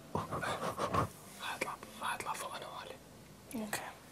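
Hushed, whispered speech from people sitting close together in a small room, in a few short stretches with brief pauses between.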